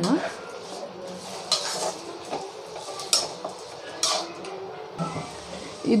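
Metal spatula scraping and clinking against a metal kadai as raw chicken pieces are stirred, in a few separate strokes.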